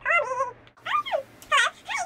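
A woman's high-pitched excited squeals: about four short wordless calls that swoop down and back up in pitch, with short pauses between them.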